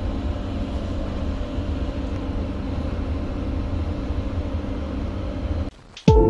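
Doha Metro train running, heard from inside the front car: a steady rumble and hiss of wheels on rail and motors. It cuts off suddenly near the end.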